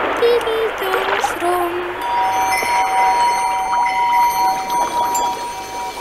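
A girl's voice singing the last three held notes of a short song, each a step lower than the one before, over a steady hiss like surf. About two seconds in, music takes over with two steady high notes held.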